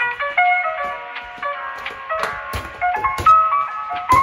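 Background music with a quick melody of short plucked or keyed notes, with a few sharp knocks partway through.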